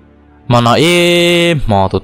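A storyteller's voice drawing out one long, steady chanted note after a short pause, then going back to quick speech near the end.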